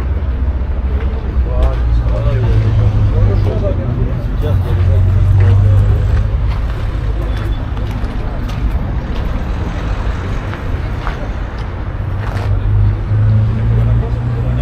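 Indistinct voices of people talking in the background, over a steady low rumble that swells now and then.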